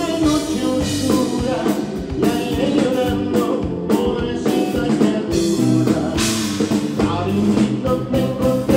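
Live band playing a song: a man singing lead over electric bass and a steady beat.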